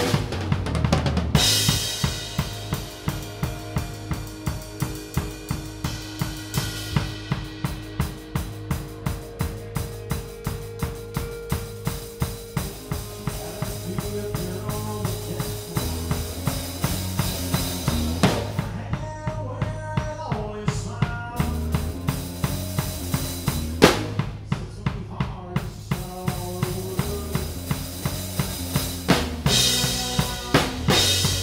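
Drum kit played close up in a live country band: kick and snare keep a steady beat of about two hits a second under bass and sustained guitar notes. Cymbal crashes open and close the passage, and twice the cymbals drop out briefly, with one hard accent just before the second break.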